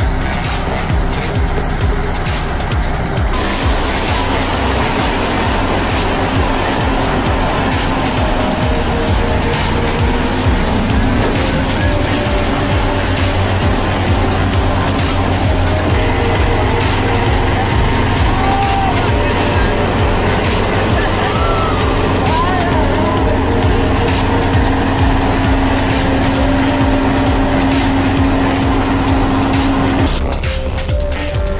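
Electronic background music with a steady beat, over vehicle engine noise from the clips beneath it.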